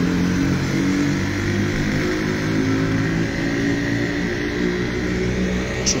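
A motor vehicle's engine running steadily close by, with a faint high whine over it.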